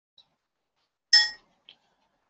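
A single short, bright electronic chime about a second in, dying away within a few tenths of a second, followed by a faint click: a Google+ Hangouts alert tone.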